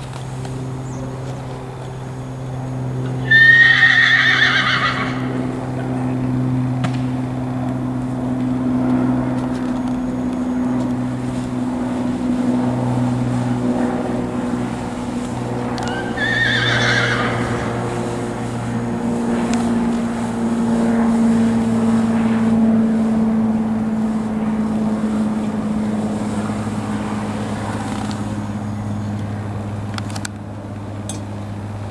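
A horse whinnies twice: a loud call about three seconds in, and a shorter one about sixteen seconds in. A steady low mechanical hum runs underneath throughout.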